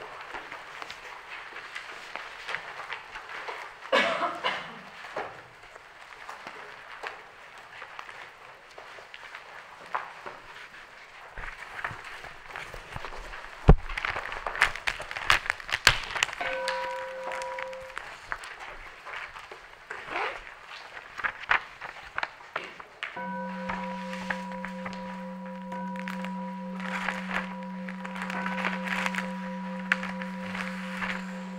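Irregular crackling noise with scattered sharp clicks and knocks. Near the middle a held musical note sounds briefly, and about three-quarters of the way through a steady sustained tone with a few overtones comes in and holds to the end.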